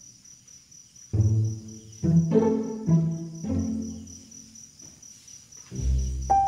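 Slow background music of sustained chords coming in about a second in, over a steady, evenly pulsing chirping of crickets.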